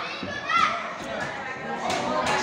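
Children's voices shouting and chattering in a large hall, one voice rising in a shout about half a second in, with a single sharp smack near the end.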